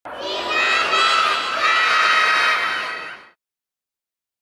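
A crowd of children's voices shouting and cheering together. It starts abruptly and fades out after about three seconds.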